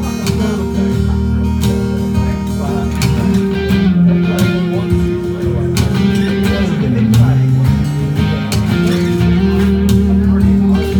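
Live electric guitar music, a red semi-hollow Telecaster-style guitar played through an amplifier in an instrumental passage of a song. Held chords ring over a continuous low bass line.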